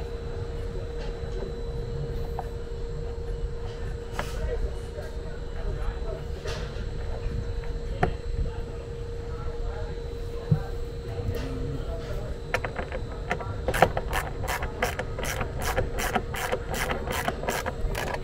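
A steady low hum with occasional light knocks from handling. About two-thirds of the way in comes a run of even clicks, about three a second: a ratcheting hand tool driving an M6 bolt into a steel roof bracket.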